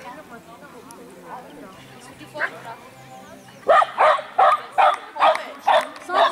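Small dog barking repeatedly, about two to three barks a second, starting a little past halfway through and carrying on to the end.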